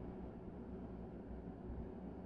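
Faint room tone: a steady low hum with light hiss, no distinct events.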